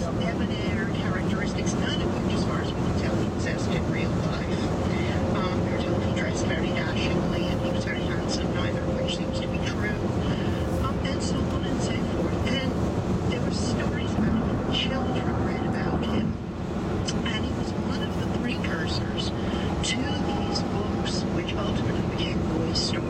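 Steady road and tyre noise inside a 2011 VW Tiguan SEL cabin at highway speed, from 18-inch wheels on 50-series tyres, which the owner blames for a noisy ride. Indistinct talk runs underneath, and the noise dips briefly about two-thirds of the way in.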